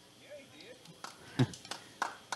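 Quiet ballpark background picked up by the commentary microphone, with faint distant voices and a short knock about one and a half seconds in.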